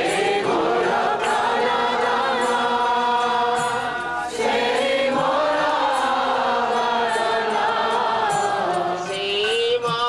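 A group of voices chanting a devotional bhajan together in two long sung phrases, with a brief break about four seconds in.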